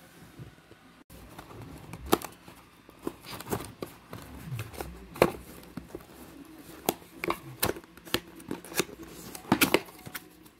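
Cardboard toy box and paper leaflet handled by hand: irregular clicks, taps and rustles, with a few sharper knocks about two, five and nine and a half seconds in.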